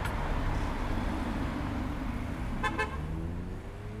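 City traffic noise, a steady rush that swells and fades, with a short car horn toot about two-thirds of the way through.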